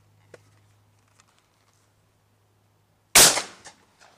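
A single shotgun shot, loud and sudden about three seconds in, dying away quickly, with a much fainter crack about half a second after it.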